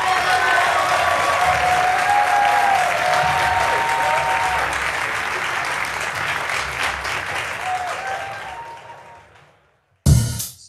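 Audience applauding, with a few voices calling out over the clapping; it fades away near the end.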